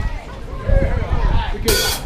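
Faint voices talking between songs, with one short, bright hiss of a drum-kit cymbal just before the end.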